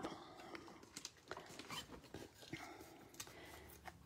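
Near silence with faint rustles and a few light taps as cardstock and a sheet of foam adhesive dimensionals are handled.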